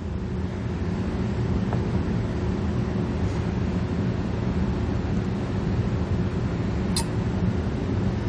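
Steady low mechanical hum of background machinery, with one sharp tick about seven seconds in.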